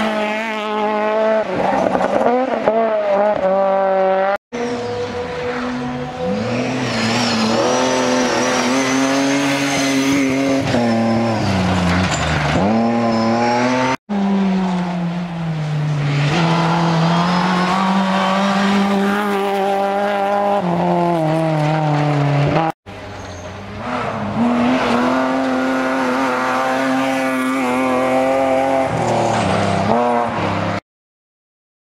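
Rally cars racing past one after another on a gravel stage, engines revving hard, the pitch climbing and dropping with each gear change and lift. The sound breaks off briefly three times between cars; the first is a Honda Civic rally car passing close.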